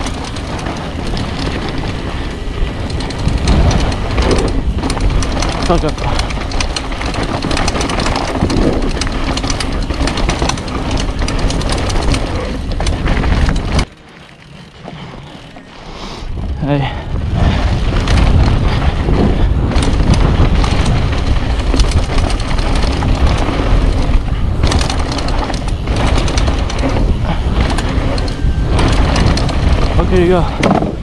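Mountain bike riding fast down a loose dirt trail, heard from a handlebar or helmet camera: dense rushing noise of wind on the microphone, tyres on gravel and the bike rattling over bumps. The noise drops away sharply for about two seconds near the middle, then returns.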